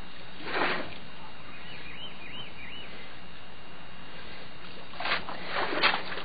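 Wooden canoe paddle splashing in river water over a steady hiss: one stroke about half a second in, then a quick run of splashes near the end, the last the loudest. Around two seconds in, four short high chirps.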